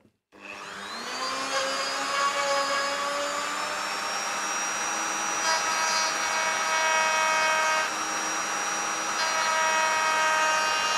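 Dremel rotary tool in a Stumac precision router base, fitted with a small down-cut spiral bit, switched on and spinning up to a steady high whine. It then routs a shallow recess in wood for a coin inlay, its note shifting a few times as the bit takes load.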